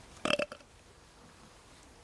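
A man's single brief voiced sound, a short throaty grunt-like noise, just after the start. It is followed by faint, steady outdoor background.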